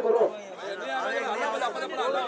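Several men's voices talking over one another in a crowd, with one louder voice right at the start.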